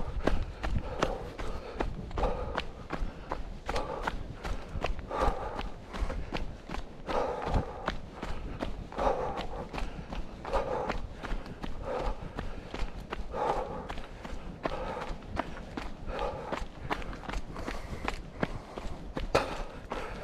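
A runner's footfalls on a packed-dirt forest trail strewn with leaf litter: quick, regular steps, about three a second, at a steady jogging pace.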